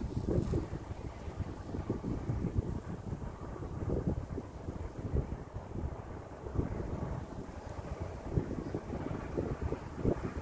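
Wind buffeting the microphone outdoors, in irregular gusts of low rumbling noise.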